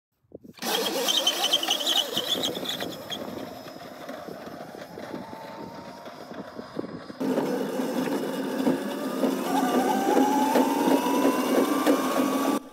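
72-volt electric Crazy Cart driving fast on concrete: the electric drive motor whines over the rattle and road noise of its small hard wheels. In the second half the motor whine rises steadily in pitch as the cart speeds up.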